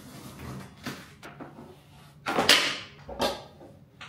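A flat-packed mesh office chair's cardboard box being opened and its parts handled: a few light knocks and clunks, then a loud scrape a little over two seconds in and a shorter one about a second later.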